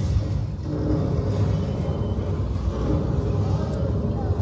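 Deep, steady rumbling from a museum exhibit's sound-and-light show. Faint voices can be heard underneath.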